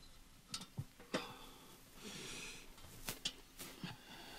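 Faint handling and movement noise: a few scattered sharp clicks and knocks, and a short rustle about two seconds in.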